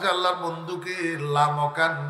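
A man's voice chanting the sermon in a drawn-out, sing-song delivery through a microphone, holding long notes.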